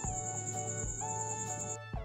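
Background music: a melody of held notes over a steady soft beat, roughly one beat a second.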